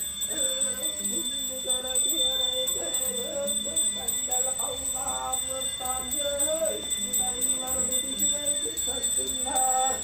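Slow chanted singing, a drawn-out wavering melody held on long tones, in the manner of a Sakha algys blessing chant.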